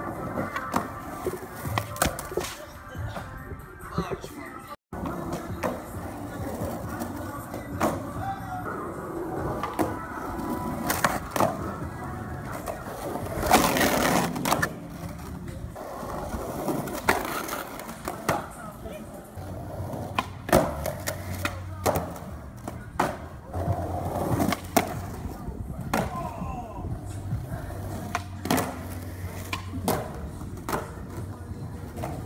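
Skateboards rolling on asphalt and concrete, with repeated sharp clacks of boards popping, landing and hitting the ground, over background music.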